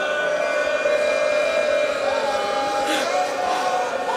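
A man's voice holding one long chanted note in a Muharram noha (mourning lament), amplified through a microphone. Past the middle the note glides up, holds higher, then falls back.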